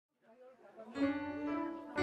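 Instrumental music fading in: a held chord on an electronic keyboard, faint at first and swelling about a second in.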